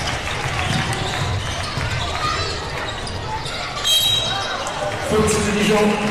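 Basketball game sound in an arena: a ball bouncing on the hardwood over crowd noise. About four seconds in comes a short, high referee's whistle blast that stops play. Near the end a low tone holds for about a second.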